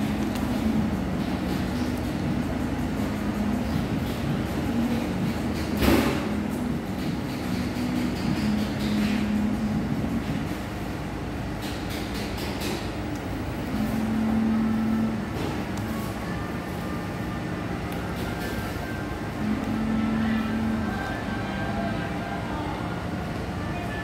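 Fast-food restaurant room sound: a steady low hum that swells for a second or so at a time, with faint background music and one sharp knock about six seconds in.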